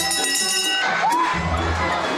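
A brass bell rung by its rope, its ringing dying out within the first second, followed by a burst of cheering. Background music with a steady beat plays throughout.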